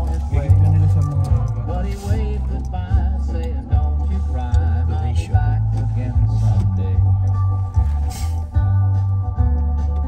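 Music with guitar and a steady bass line, playing over the car radio inside the cabin.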